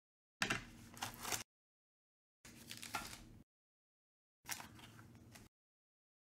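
Handling of a cardboard trading-card box and its plastic-cased cards: a few soft knocks and clicks with light rustling. The sound cuts in for about a second every two seconds, with dead silence between.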